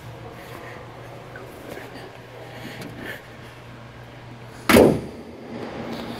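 A steady low hum with one short, loud thump a little before the end.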